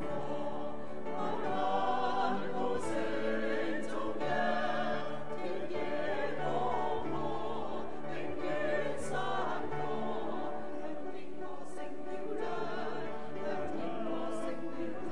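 A choir singing a sacred choral piece, with long held notes and wavering vibrato in the voices.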